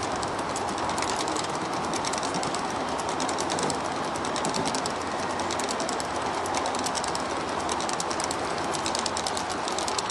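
G scale model freight train rolling past on outdoor track, its wheels clicking rapidly and steadily over the rails.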